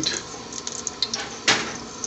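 Whole onion, cumin and mustard seeds in oil in a large aluminium pot, crackling lightly over a steady hiss, with one sharp knock about one and a half seconds in.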